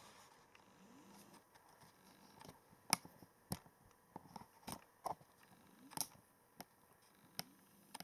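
Faint, irregular clicks and handling noise from a handheld video camera as it is zoomed in, over low room hiss.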